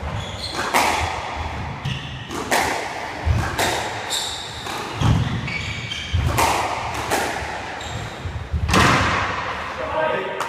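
Squash ball being struck by rackets and hitting the court walls during a rally: sharp cracks and thuds every second or two, ringing in the hard-walled court.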